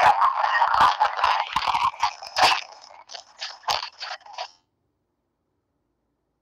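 Crackling, rustling handling noise with scattered sharp clicks from a participant's phone microphone, heard through the video-call audio. It stops abruptly about four and a half seconds in.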